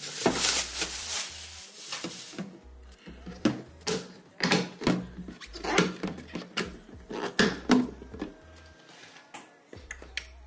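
Thin plastic bag crinkling as a clear plastic food storage container is pulled out of it, then a string of sharp plastic clicks and knocks as the container and its clip-latch lid are handled.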